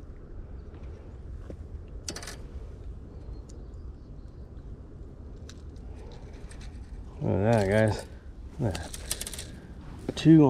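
Low outdoor background noise with a brief rustle about two seconds in, then a man's voice, drawn out and wavering in pitch, twice near the end.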